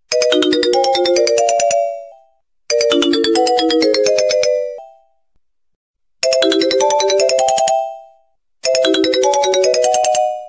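A short chiming melody like a phone ringtone: a phrase of about two seconds that plays four times, with brief pauses between.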